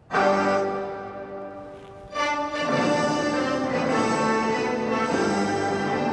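Orchestral music cutting in suddenly with a loud held chord, then a fuller chord swelling in about two seconds in and holding: the stadium's public-address sound system being tested.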